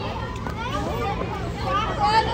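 A group of children chattering and calling out all at once, many overlapping voices with no single one standing out.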